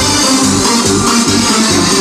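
Loud electronic dance music with a steady beat, played from a disco DJ's decks through the sound system.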